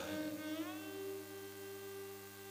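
A steady musical drone of several held tones sounds under a pause in a man's speech, with a brief rising glide in the upper tones.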